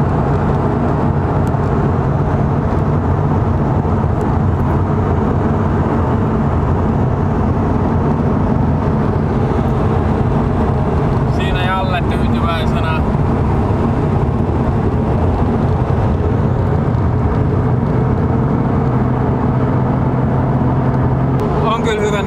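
Car cruising at steady highway speed heard from inside the cabin: a steady engine drone with tyre and wind noise, no revving.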